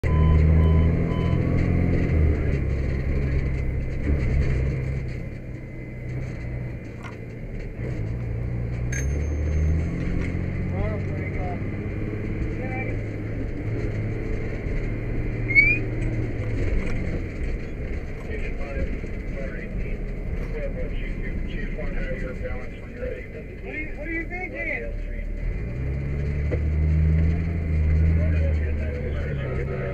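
Fire engine's diesel engine running, heard from the cab, its low rumble rising and falling in pitch as the revs change, with faint, muffled radio voices over it.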